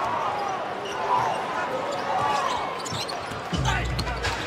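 Basketball being dribbled on a hardwood court, with arena crowd noise and voices around it.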